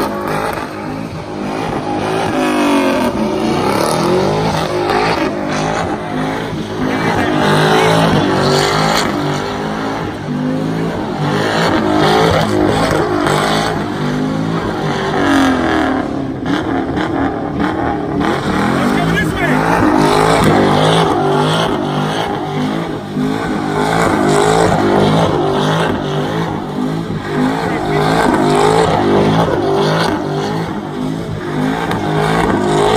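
A Chevrolet Camaro doing donuts. Its engine is held at high revs, repeatedly rising and falling, while the rear tyres spin and squeal on the asphalt.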